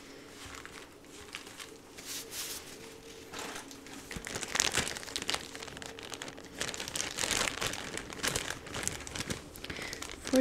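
Blue nitrile gloves being handled and pulled on close to the microphone: irregular crinkling and rustling, getting louder from about four seconds in.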